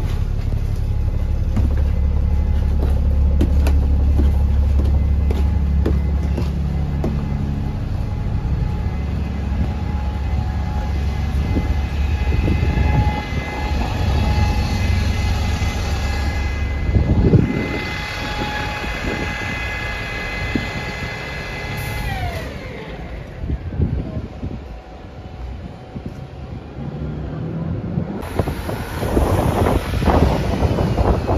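Wright Gemini 2 double-decker bus's diesel engine idling with a steady low hum, heard first inside the bus and then from beside it. About halfway through, a high steady whine joins in and falls in pitch about two-thirds of the way in, among general bus station vehicle noise.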